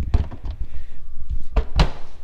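Fingers working a metal engine-cowling latch on a Beechcraft Bonanza: a couple of light knocks, then a louder clunk near the end as the latch catches, over handling noise.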